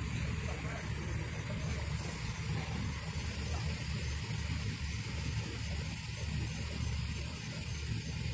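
A vehicle engine idling as a low, steady rumble.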